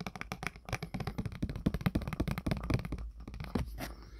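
Fingers and nails handling a tarot card close to the microphone: a rapid run of small clicks and scratches that thins out near the end.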